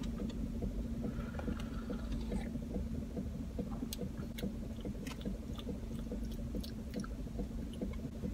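Steady low hum and rumble of a car cabin, with faint small clicks and mouth sounds of someone drinking from a glass bottle of cold brew coffee.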